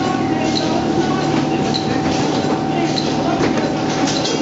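Demtec potting machine and Urbinati RW8 transplanter line running at production speed: a steady conveyor and motor hum with a constant tone, light clatter of pots and mechanism, and a short high blip repeating about every second and a bit.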